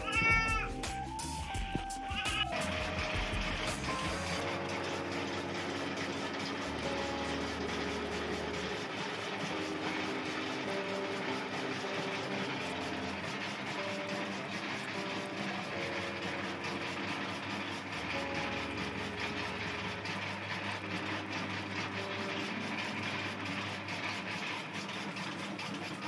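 A goat bleats during the first two seconds. Background music with a slowly changing bass line then plays over the steady running noise of an electric chaff cutter.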